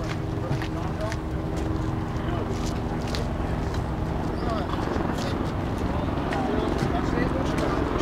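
Busy outdoor ambience: indistinct background voices, a steady low hum that fades out about halfway through, and scattered light clicks and knocks over a low rumbling background.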